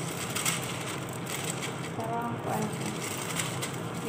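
Paper rustling and crinkling as a sheet is pulled off a roll and handled.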